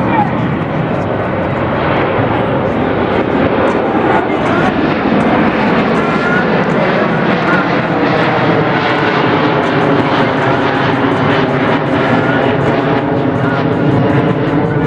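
An aircraft flying low overhead: a loud, steady engine noise that builds slightly over the first couple of seconds and then holds, with people talking underneath.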